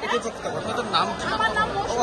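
Speech only: people talking over each other in a crowd.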